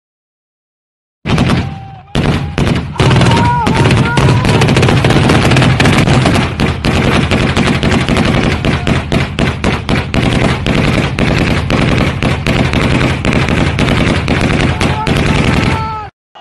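Heavy, sustained automatic gunfire in rapid, overlapping shots. It starts about a second in and runs without a break until it stops abruptly at the end, with a few brief voices heard among it.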